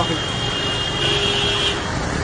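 Floodwater rushing down a city street as cars drive through it, making a dense, steady wash of water and traffic noise. A thin, steady high-pitched tone runs through it and grows louder for under a second midway.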